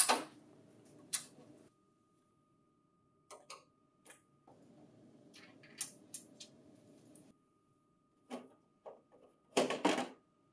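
Light, scattered clicks and ticks of a flathead screwdriver working screws on a printer's metal bin cover, a dozen or so spaced out irregularly, with a louder cluster of clicks near the end as the cover panel is handled.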